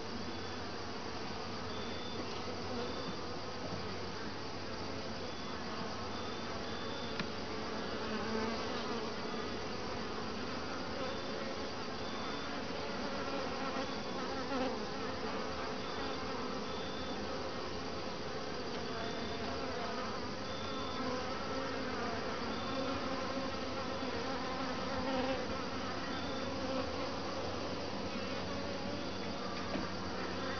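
A honeybee colony buzzing around an opened top-bar hive: a steady hum with many wingbeat pitches wavering and overlapping.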